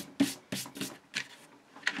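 Hands handling and rubbing a sheet of card stock on a cutting mat: a handful of short, irregular rustling strokes.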